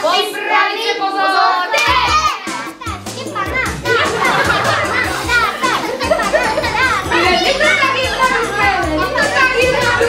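A crowd of young children shouting and cheering in a room, with music playing underneath from about two seconds in.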